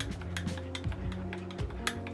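A metal spoon stirring in a ceramic mug, clinking against its sides in a quick, irregular run of clicks, over background music with sustained low notes.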